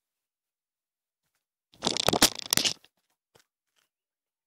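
A tablet's own microphone taking a loud burst of rubbing and several sharp knocks lasting about a second, as the tablet is dropped and tumbles; a couple of faint clicks follow.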